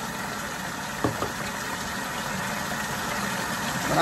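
Kitchen tap running steadily, with a brief knock about a second in.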